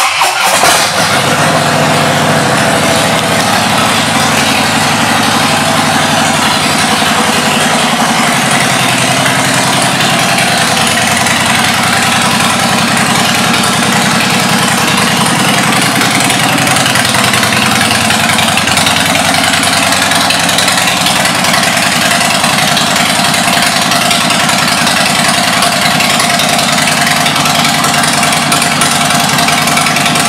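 2015 Harley-Davidson Dyna Wide Glide's Twin Cam 103 V-twin, breathing through aftermarket exhaust pipes, starts suddenly at the very beginning and then idles steadily and loudly.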